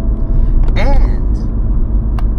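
Steady low rumble of a moving car heard from inside the cabin, with a brief vocal sound just under a second in.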